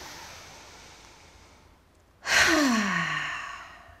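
A woman takes a deep breath in through the nose, then lets it out through the mouth in an audible sigh about two seconds in, its pitch falling as it fades away over about a second and a half.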